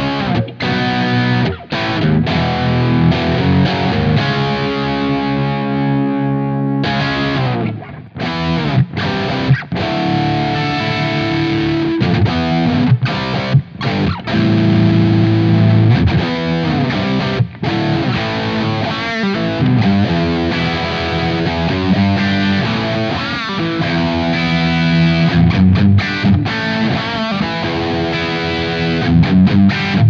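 Overdriven electric guitar through a J. Rockett HRM v2 overdrive pedal, set with the gain around halfway and the mids and low-mids favoured, playing rock chords and riffs with a few short pauses. A Stratocaster plays first, then partway through a Les Paul takes over.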